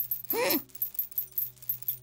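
Cartoon sound effects: a quick run of light ticks, about five a second, throughout. About a third of a second in comes a short, high cartoon-chick grunt that rises and falls in pitch.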